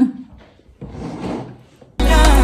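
A young girl laughs briefly, then a table knife scrapes across a ceramic dinner plate for about half a second as she cuts her food.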